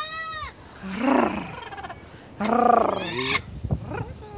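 Blue-fronted amazon parrots calling: three separate calls, a short arching squawk at the start, a rougher call about a second in, and the loudest call in the second half.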